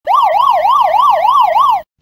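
Siren sweeping rapidly up and down in pitch, about six rises and falls, cutting off suddenly near the end.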